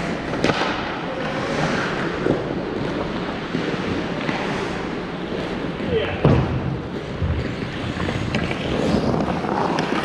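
Ice hockey play on an indoor rink: skate blades scraping the ice, with a few sharp stick and puck clacks, about half a second in and around six seconds in, and players' voices, all echoing in the large arena.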